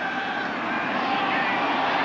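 Stadium crowd noise: a steady, even hum of many voices in the stands while a play is run.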